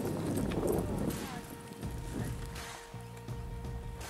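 Hoofbeats of a horse jogging on dry packed dirt, under background music with a steady held note that comes in about a second in.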